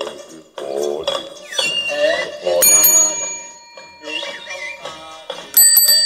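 A bicycle bell on a one-man band rig, rung twice, about two and a half seconds in and again near the end, each ring hanging on as it fades. Between the rings is a wavering, voice-like sound.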